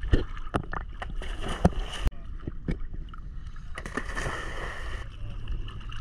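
Small sea waves lapping and sloshing against a camera held at the waterline, with sharp knocks of water slapping the housing in the first couple of seconds and a louder rush of water from about four seconds in. A faint steady hum runs underneath.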